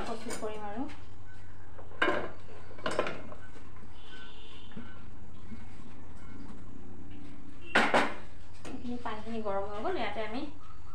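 Stainless steel kitchen utensils clanking: a steel plate or lid knocking against steel pots, with single clinks about two and three seconds in and a quick double clink near the end.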